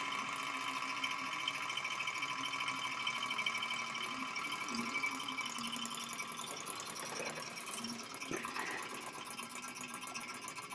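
Small model Stirling engine running fast, its flywheel, crank and piston making a steady, light, fast mechanical whir and clatter.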